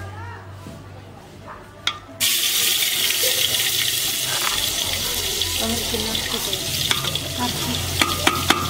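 A hot tempering ladle (tadka) lowered into an earthenware pot of curry: a sudden loud sizzle breaks out about two seconds in and keeps going steadily. Before it, a few light clinks of metal ladles against the pot.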